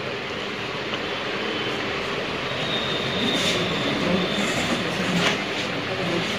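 Steady rushing background noise with no speech, and a brief click about five seconds in.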